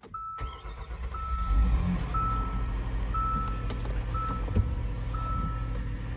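Hyundai 3.3 V6 engine cranking and catching about a second and a half in, then running steadily: the start after a cylinder head swap to replace bent valves. A dashboard warning chime sounds about once a second throughout.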